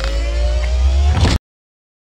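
Closing effect of a nu metal track: a deep, loud rumble with a tone slowly rising in pitch above it, cut off abruptly about a second and a half in, then dead silence.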